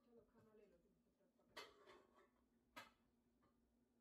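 Near silence: faint room tone with a low steady hum and two faint clicks.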